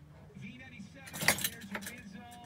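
Keys jangling and clicking in the truck's ignition, loudest a little over a second in, over a faint steady low hum.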